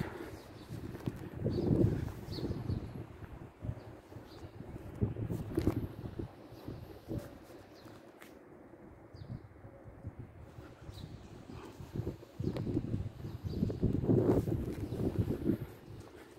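Wind gusting on a phone microphone during a walk outdoors, a low rumble that swells and fades in gusts, loudest near the end, with faint footsteps on paving.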